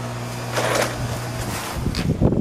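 A steady low hum, a short rush of noise about half a second in, then wind buffeting the microphone near the end.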